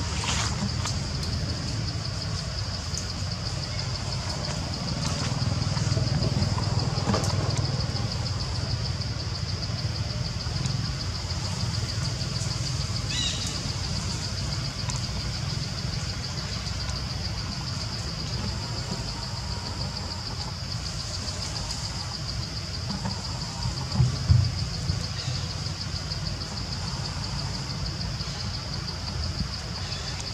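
Steady, high-pitched insect drone, typical of cicadas, over a low rumble, with two sharp knocks about 24 seconds in.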